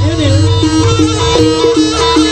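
Live East Javanese jaranan (kuda lumping) gamelan music: a reedy, shawm-like wind instrument plays over a rapidly repeating two-note figure and a steady low percussion layer.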